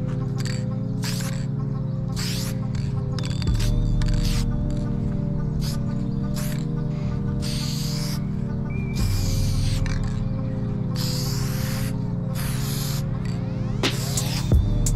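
Background music with a steady, sustained bass line. Over it come short, irregular bursts of hiss from an aerosol spray-paint can as lines are sprayed.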